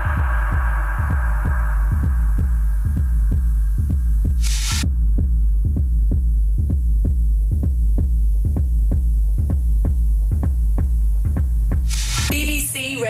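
Electronic dance music: a deep, throbbing sub-bass under a steady, fast, evenly repeating beat, with a short burst of hiss about four and a half seconds in.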